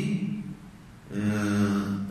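A man chanting Quranic Arabic in melodic recitation. A long held note fades about half a second in, and after a short breath a second long, steady note follows.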